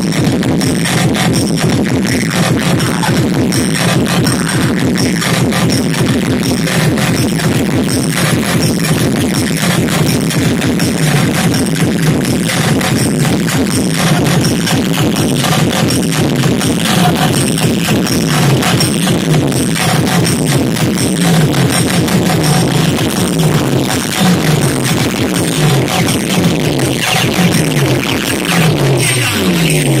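Very loud electronic dance music blasting from a DJ sound system at a street sound competition, with a steady beat. In the second half a bass line slides downward over and over.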